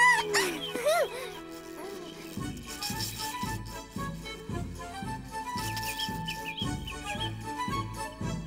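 A squeaky cartoon voice gives a few sharply rising and falling squeals, the loudest sound, in the first second or so. Then playful background music takes over, with bass notes bouncing about twice a second under a light melody.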